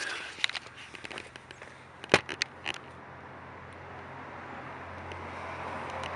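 A passing motor vehicle's steady noise and low hum growing louder over the second half, after a run of small clicks and a sharp knock about two seconds in.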